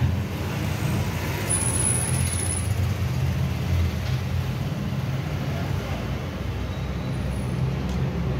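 A steady low rumble of running vehicle engines, continuing without a break. A short high-pitched tone sounds briefly about two seconds in.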